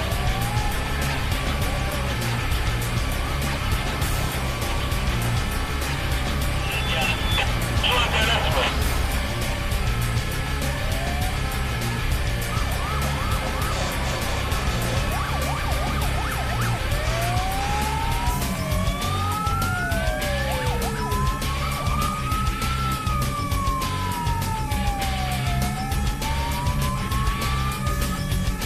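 Background music with a steady beat runs throughout. In the second half a fire engine's siren wails over it, its pitch sweeping slowly up and down.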